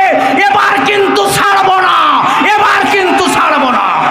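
A man's voice preaching loudly through a public-address microphone, in long drawn-out phrases that glide up and down in pitch.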